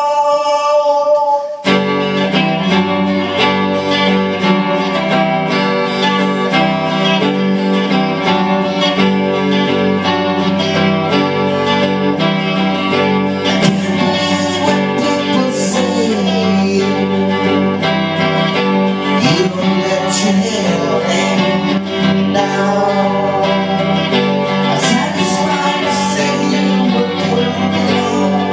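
Electric guitar strummed through an amplifier, starting in earnest about two seconds in, with a steady low note ringing under the chords and a man singing along.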